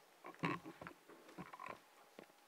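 Desk gooseneck microphone being handled and bent into position. There are a few faint, short knocks and rubs close to the mic.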